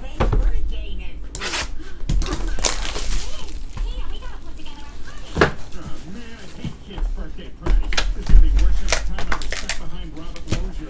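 Cardboard trading-card hobby box and foil card packs being handled: sharp crinkles, clicks and knocks, with a few low thumps near the end, over background talk.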